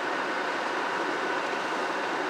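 Steady, even hiss of background noise inside a pickup truck's cab, with a faint high whine held steady.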